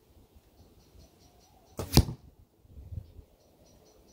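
An arrow striking a hay-bale target, a brief rush ending in a single sharp thud about two seconds in.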